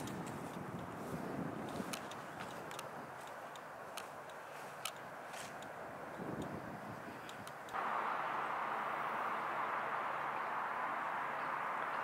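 Steady outdoor background noise, a soft hiss with a few faint clicks, that suddenly becomes louder and brighter about eight seconds in.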